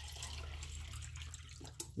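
Water running steadily from a tap into a quart can, a faint even hiss that dies away near the end, followed by a short knock.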